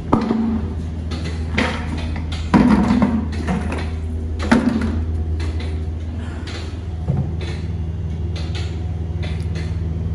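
Yellow plastic buckets being handled, with several hollow knocks and clunks, the loudest about two and a half seconds in, over a steady low machinery hum.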